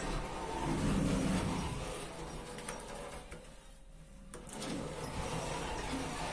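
KLEEMANN passenger lift in operation, heard from inside the car: a steady rushing noise from the sliding doors and the moving car. It dips between about three and four seconds in and picks up again suddenly just after four seconds.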